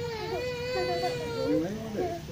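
A young child crying in one long drawn-out wail that drops in pitch near the end.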